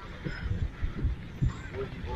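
Soft, irregular low thuds, about half a dozen in two seconds, of the kind made by footsteps and handling while a handheld camera is carried across a wooden footbridge.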